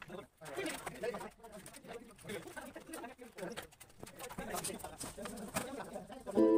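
Pigeons cooing, with faint voices and a few light knocks.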